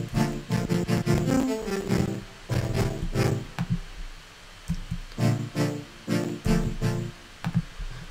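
Synthesizer chords from saw-wave oscillators, one stacked with five voices, pulsing in a choppy rhythm shaped by an LFO and a filter envelope. The patch runs through a bit crusher for an 8-bit, lo-fi character. The chords come in phrases with short gaps about two and four seconds in and near the end.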